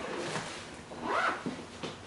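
Squeaking and rustling of foam plates being handled, with a short rising squeak about a second in.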